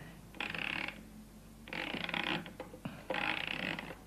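Clockwork mechanism of an antique juggler automaton being wound, in three ratcheting turns about a second apart.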